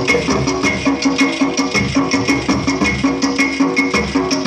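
Percussion ensemble playing a fast, even rhythm on ghatam clay pots and hand drums, about four strokes a second over a steady ringing note.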